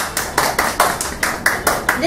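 A small group of people clapping their hands, a brisk even clapping of about five claps a second.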